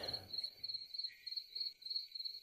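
Crickets chirping in a steady pulsing rhythm, about four chirps a second, as night ambience.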